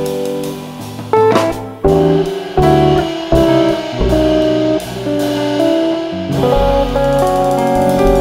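Live jazz quartet: a hollow-body electric guitar plays held chords and lines over double bass and a drum kit with cymbals. The chords change about once a second.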